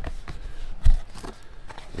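Cardboard box being opened by hand: light scraping and rustling of the lid and flaps, with one thump a little under a second in.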